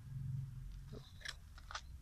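Brief dry rustling and crackling, a handful of short crackles about a second in, over a low rumble of handling or wind on the microphone.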